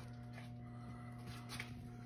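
Faint steady electrical hum of a machine shop, with a couple of soft, brief clicks.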